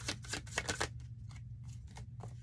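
Tarot cards being shuffled by hand: a quick run of crisp card flicks in the first second, then a few softer, sparser ones over a low steady hum.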